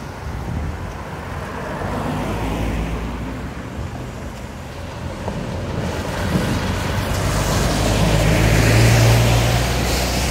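Road traffic driving over the crossing: cars passing, then an articulated lorry's diesel engine growing louder as it approaches, loudest just before the end as it goes by.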